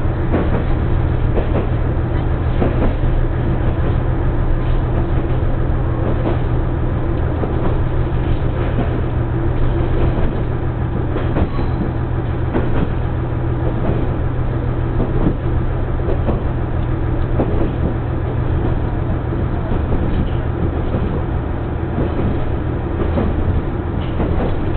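Diesel railcar heard from inside the carriage while running along the line: a steady low engine drone with rumbling wheel and track noise and scattered clicks and knocks from the wheels over the rails.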